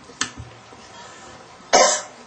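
A single loud, short cough near the end, with a faint click about a quarter second in.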